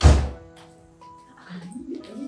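A sudden heavy thump with a deep low end at the very start, dying away within about half a second, followed by soft held music notes; a woman's voice begins to rise near the end.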